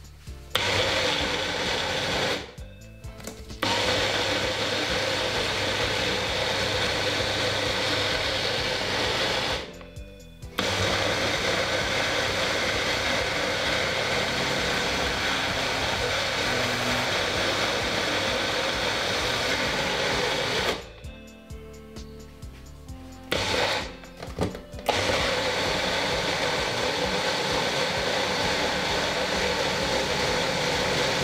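Personal bullet-style blender motor running at full speed as it purees carrots and water into juice. It runs in four long stretches, stopping briefly about two, ten and twenty-one seconds in; the last stop lasts about four seconds.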